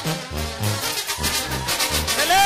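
Brass band music in the style of a Mexican banda, brass over a low bass line that bounces between two notes.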